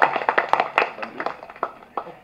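Audience applauding, the clapping thinning out and dying away about a second and a half in.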